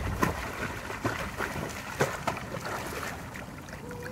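A swimmer splashing in a pool: water churning and sloshing, with a few sharper splashes through it.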